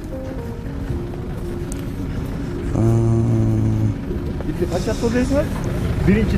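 Livestock market sound: a steady low rumble, with one long, even-pitched cattle bellow lasting about a second that starts about three seconds in. Men's voices come near the end.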